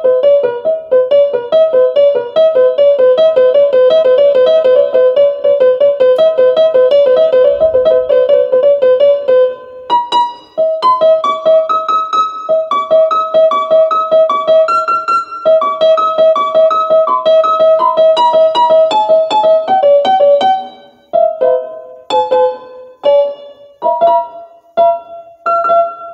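Piano music: a fast repeating two-note figure for about the first ten seconds, then a higher melody over quick repeated notes, breaking into short separate notes over the last five seconds.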